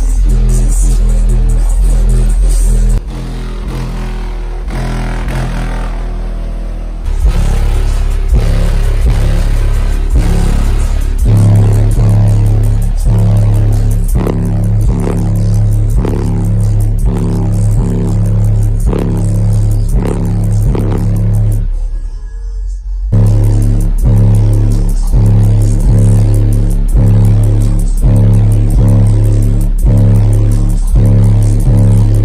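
Bass-heavy electronic music played very loud through two Sundown 18-inch car subwoofers, heard inside the car's cabin, with deep pounding bass notes carrying most of the sound. The music goes quieter for a few seconds early on, then cuts out for about a second some 22 seconds in before the bass comes back.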